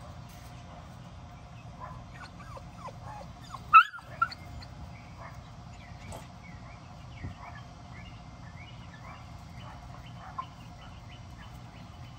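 A dog whimpering and whining in short, high cries, with one sharp yelp about four seconds in and a smaller one right after it. Faint chirping of young chickens runs under it.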